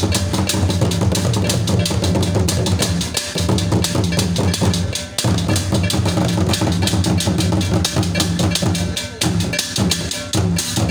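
Traditional Ghanaian drum ensemble playing a fast, dense rhythm: a pair of pegged wooden talking drums is beaten with sticks alongside other drums. Steady low tones run underneath and drop out briefly about three, five and nine seconds in.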